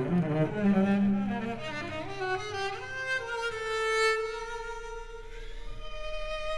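Cello playing a slow bowed melody. It moves up from low notes to a long held higher note.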